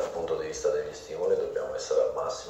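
Speech: a man talking in Italian.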